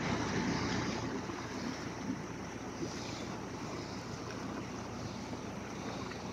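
Steady rush of muddy floodwater running fast through a rain-swollen storm-water canal and over the street, fairly faint.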